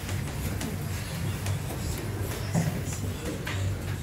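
Background noise of an indoor produce market: a steady low hum with a few scattered clicks and rustles.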